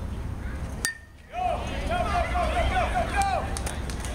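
A bat strikes the pitched baseball about a second in: one sharp crack with a brief ring. Spectators then shout and cheer for about two seconds as the batter runs.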